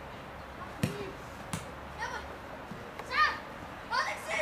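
Boys shouting short, high calls to each other on a football pitch, the loudest about three seconds in. A sharp thud of the ball being kicked comes about a second in.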